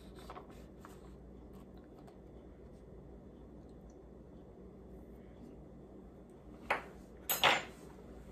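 Faint room noise, then a metal spoon clinking twice near the end, the second clink the louder and longer.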